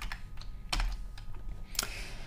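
Typing on a computer keyboard: irregular key clicks, two of them louder, at about three-quarters of a second in and near the end.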